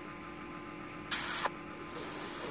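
Faint steady electrical hum, with one short hiss about a second in.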